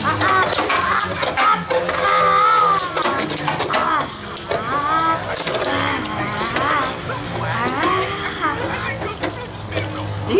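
High children's voices making wordless, drawn-out sounds, over the light clicks and clacks of two Beyblade spinning tops knocking together in a plastic stadium.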